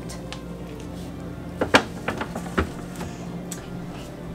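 A few knocks and clinks as a pan of squares is set on a refrigerator shelf among the containers, the sharpest one a little under two seconds in, over faint background music.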